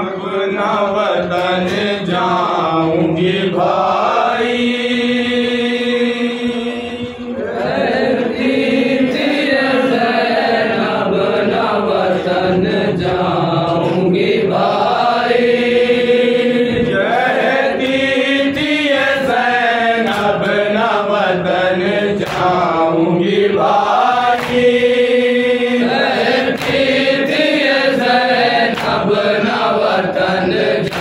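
A noha, a Shia lament, chanted by a solo young male voice into a microphone. It is a slow, ornamented melody in long phrases, with a long held note about every ten seconds.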